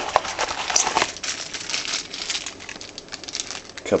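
A clear plastic parts bag crinkling as it is handled: a dense run of quick crackles, loudest in the first second and easing off after.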